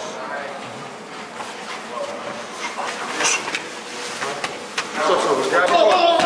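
Indistinct men's voices talking in a large hall, with a few sharp smacks of punches landing on focus mitts, the clearest about three seconds in.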